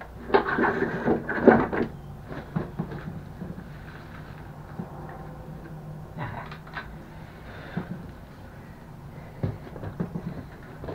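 Clunks, knocks and scraping as a heavy scooter battery and its parts are handled and shifted on a mobility scooter's frame. There is a dense burst of clatter in the first two seconds, another short one about six seconds in, and scattered single knocks between.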